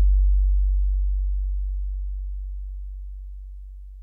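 A deep electronic sub-bass note, the final note of a song, held and fading slowly and evenly.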